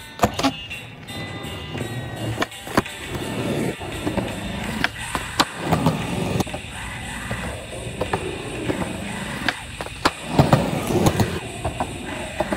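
Skateboard wheels rolling on concrete, with several sharp clacks of the board's tail popping and landing, over background music.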